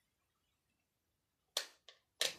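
Near silence, then two sharp clicks of a light switch being flipped, the first louder, about a third of a second apart near the end.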